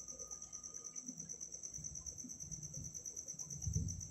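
Food chopper running with its blade chopping a raw chicken and vegetable mince. It gives a faint, steady high whine with a regular pulse, and a low churning that swells near the end.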